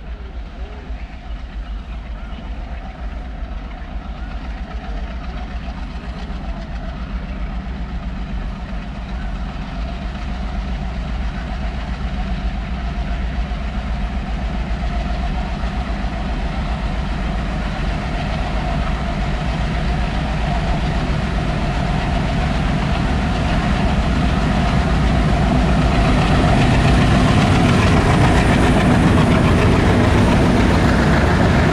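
Twin ALCo WDG-3A diesel locomotives working hard under a fully loaded coal freight, their engines chugging and growing steadily louder as they approach and draw level near the end.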